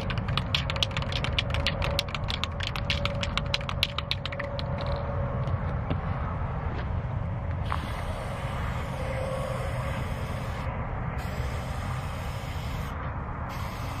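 Aerosol spray-paint can being shaken, its mixing ball rattling about five or six times a second for the first few seconds. The can is then sprayed in long hisses broken by two short pauses. Wind rumbles on the microphone underneath.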